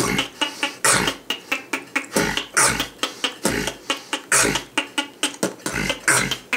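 Beatboxed beat: deep vocal kick drums about once a second under sharp hissing hi-hats and snares, with the K.I.M. squeak, a high squeak made with pursed lips and the tongue, worked into the pattern.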